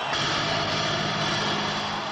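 Live rock concert sound: a steady, dense roar at an even level with a held low note underneath.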